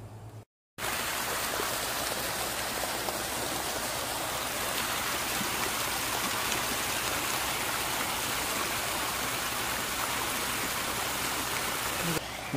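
Water rushing and splashing along a sloping stone bank, a steady, even rush. It cuts in suddenly a little under a second in, after a brief silence.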